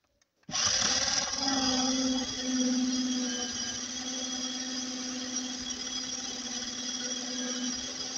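Small electric motor of a motorised LEGO car running at a steady speed, a steady whine with a hiss of spinning gears and wheels. It starts suddenly about half a second in and eases slightly in loudness after the first few seconds.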